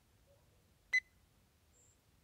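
A single short electronic beep from a handheld infrared thermometer gun as its trigger is pulled to take a temperature reading, about a second in.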